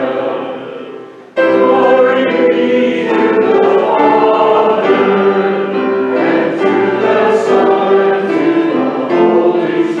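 Choir singing with held chords. The singing fades away and a new passage begins abruptly about a second in, then carries on steadily.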